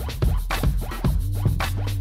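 Electronic dance track playing: a drum beat over a steady bass line, with short record-scratch-like sweeps.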